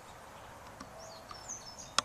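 Quiet open-air background with a few short, high bird chirps a little past a second in.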